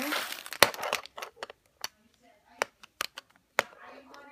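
Rustling of a red fabric pouch as a digital thermometer in a hard clear plastic case is pulled out, followed by several sharp separate clicks and taps of the plastic case being handled.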